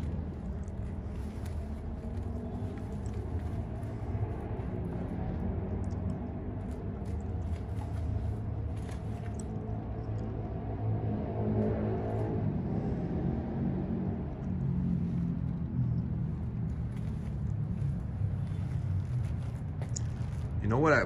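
Steady low rumble of street traffic, with a vehicle passing and growing briefly louder about halfway through.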